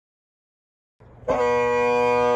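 Dead silence for about a second, then a Highland bagpipe strikes in. Drones and chanter slide briefly up into pitch and settle on one loud, steady held note.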